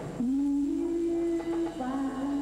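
A woman's voice through a stage microphone, humming a slow wordless line: a long note that slides up and holds for about a second, then a slightly lower note held after a short break.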